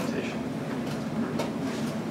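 Classroom room tone: a steady low hum, with a single faint click about one and a half seconds in.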